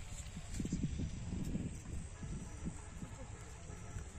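Irregular low puffs of breath and rubbery rustling as long rocket balloons are blown up by mouth, dying away about two and a half seconds in.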